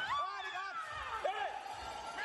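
Loud voices shouting in a sports hall as the fighters clash, high calls that rise and fall in pitch, strongest twice in the first half and again about a second and a half in.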